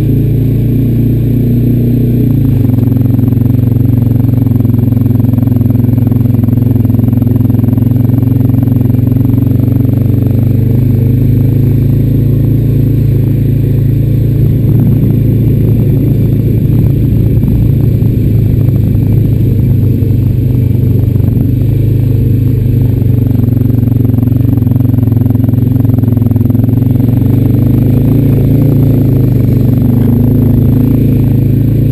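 Honda Rancher 420 ATV's single-cylinder four-stroke engine running loud and close as the quad is ridden, with small shifts in pitch as the throttle changes.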